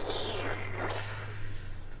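A person sucking air in through pursed lips: one long hissing breath that fades away after nearly two seconds.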